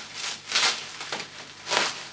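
Scissors cutting through black plastic bin-liner and tape wrapping, with the plastic crinkling; two louder bursts come about a second apart.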